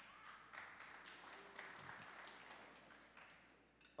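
Faint scattered audience applause, many quick claps that fade out near the end.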